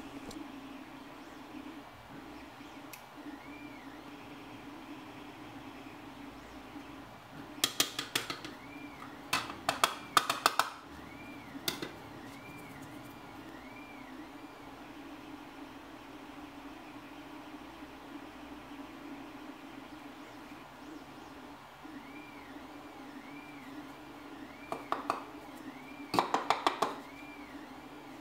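Hard plastic parts being handled during gluing: a few short clusters of small clicks and taps over a low steady hum, about a third of the way in and again near the end.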